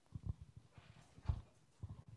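Footsteps on a hard floor: a few low, irregular thuds as a person walks across the room, the loudest a little past halfway.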